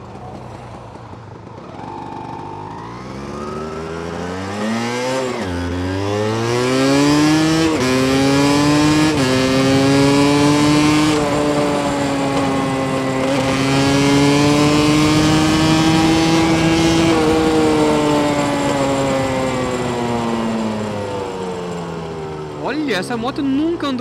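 Yamaha DT200R two-stroke single-cylinder engine accelerating hard through the gears, shifting up about three times in the first nine seconds. It then holds high revs and slowly eases off near the end, with wind rushing past. The run is a test ride after carburettor tuning.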